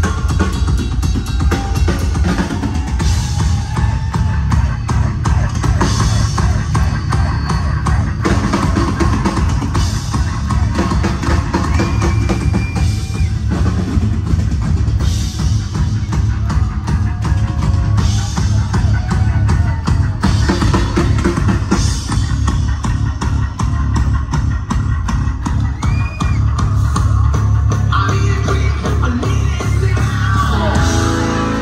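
Live rock band playing loud, with the drum kit keeping a steady, driving beat under bass and guitar.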